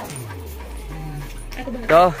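Dog whimpering and yipping faintly, under a low tone that slides slowly downward in pitch.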